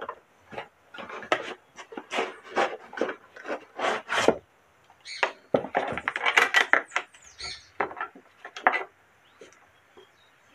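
Cardboard box being opened and unpacked by hand: irregular rustling and scraping of cardboard and packaging, as an orbital sander and its parts are pulled out and set on a table.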